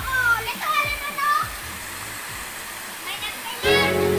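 Steady rush of a small waterfall pouring into a pool, with children's voices calling over it in the first second and a half. Music with steady held notes comes in near the end.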